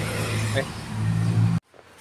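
Yamaha Mio Soul scooter's 113 cc four-stroke single-cylinder engine running steadily and rough, cutting off abruptly about one and a half seconds in. The roughness comes from the head and cylinder block, which the mechanic puts down to a jammed oil pump leaving the head dry.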